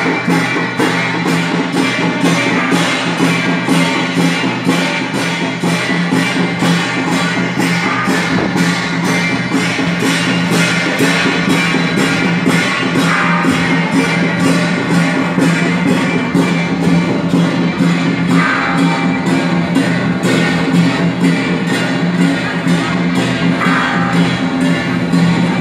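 Temple procession music: hand cymbals crash in a steady beat about twice a second over a sustained low tone.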